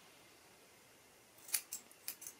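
Scissors snipping through a lock of hair held up between the fingers: two quick, crisp snips about a second and a half in.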